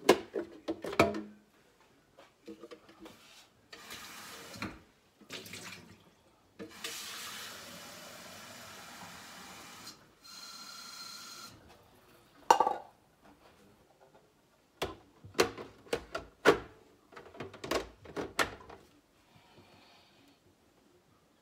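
Clicks and knocks of hands working at a Nespresso Lattissima coffee machine, with water running steadily for about three seconds in the middle and a short steady tone just after it. A loud single click follows, then a run of further clicks and knocks near the end.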